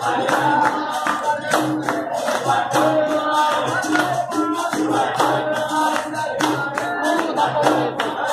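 Capoeira roda music: berimbaus playing a steady repeating rhythm with an atabaque drum and sharp percussion strokes, while the circle claps and sings.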